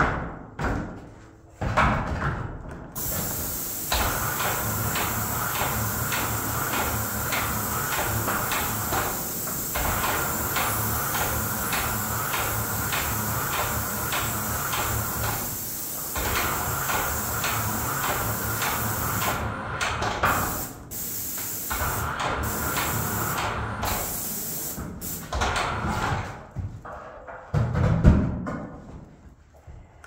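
Airless paint sprayer spraying: a steady hiss with a rhythmic ticking about three times a second, broken by short pauses as the trigger is released. A heavy thump near the end.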